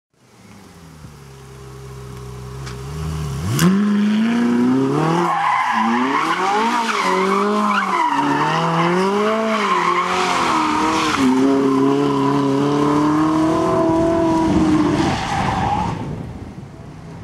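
Ferrari 458 Italia's naturally aspirated V8 idling as the sound fades in, then revved sharply about three and a half seconds in and held at high revs with the pitch wavering up and down, while the spinning rear tyres squeal in a burnout. The revs and tyre noise drop away shortly before the end.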